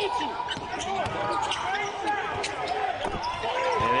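Basketball dribbled on a hardwood court during live play, with repeated bounces and sneakers squeaking.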